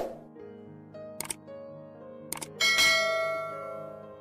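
Subscribe-button animation sound effects over soft piano background music: a sharp hit at the start, mouse-like clicks about a second in and again about two and a half seconds in, then a bright bell chime, the loudest sound, that rings and fades.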